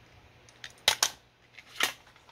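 Plastic cassette tape and its case being handled, giving three sharp clicks: two close together about a second in and one near the end.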